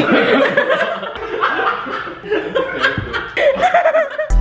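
A small group of people laughing together, overlapping, with an "ooh" among the laughter.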